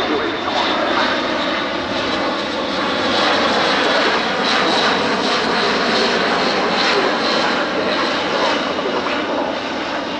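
An Airbus A400M Atlas flying past, its four turboprop engines and eight-bladed propellers running loud and steady.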